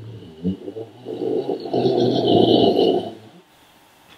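A pet making a drawn-out, rough throaty noise for about two seconds, loudest in the middle and stopping abruptly, the kind of noise that makes its owner ask whether it is okay.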